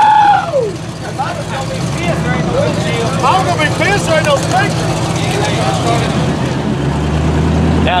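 A vehicle engine idling steadily under several people talking, with a loud falling vocal call right at the start.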